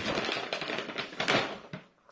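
Plastic bag of shredded cheese crinkling and crackling as a hand rummages in it and shakes it out. The crinkling is loudest just past the middle and stops shortly before the end.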